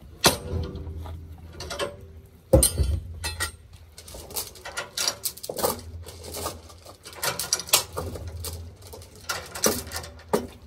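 Steel tie-down chain and a lever chain binder clanking and rattling as the chain is tightened down, a run of irregular metal knocks with the loudest clank about two and a half seconds in.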